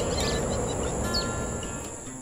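Outdoor nature ambience: a steady high-pitched insect drone with a few short bird chirps, over faint held music notes.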